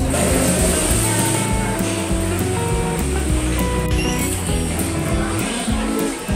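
Background music: a melody of short held notes that change pitch.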